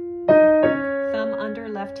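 Piano played with both hands together, descending the F# major scale in a short-long rhythm: a pair of notes struck about a quarter second in, cut short by the next pair, which is held ringing.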